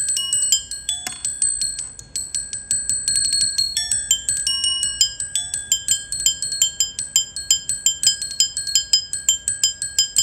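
Tuned bars of a sonic sculpture struck with mallets, giving high, bell-like ringing notes in an improvised run. There is a fast flurry of strokes about three seconds in, then a steady patter of roughly three to four strokes a second.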